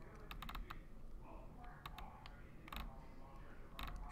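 Faint, scattered clicks of a computer keyboard: a quick run of four or five near the start, then a few more spread through, over a low room hum.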